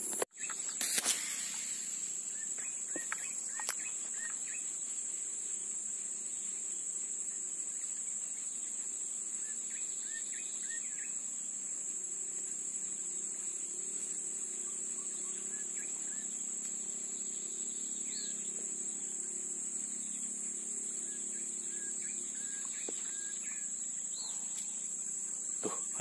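A steady, high-pitched drone of insects with scattered faint bird chirps, and a brief knock about a second in.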